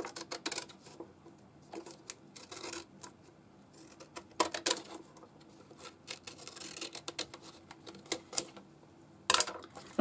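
Paper and card being handled on a cutting mat: irregular rustles, scrapes and light taps, the loudest about four and a half seconds in.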